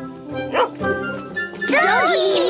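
A cartoon puppy's short barks, twice about halfway through, over light background music; excited children's voices break in near the end.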